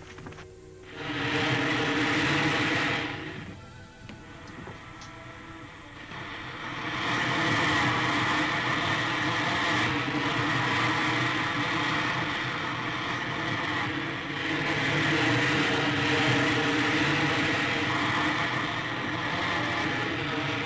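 Film-serial rocket ship sound effect, a loud hissing roar as the ship takes off and flies, over background music. The roar comes in about a second in, drops away for a few seconds, then returns and holds steady.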